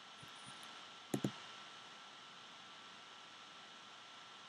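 Faint steady hiss with a thin high whine, and two quick light clicks close together about a second in: a clear plastic trading-card holder being handled.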